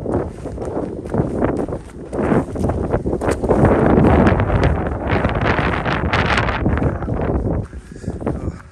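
Wind buffeting the microphone in loud gusts, heaviest around the middle and easing near the end, with footsteps on a stony path.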